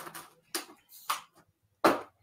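Paper rustling and crackling as a thick phone book is gripped and twisted in both hands in an attempt to tear it in half: four short bursts, the last the loudest.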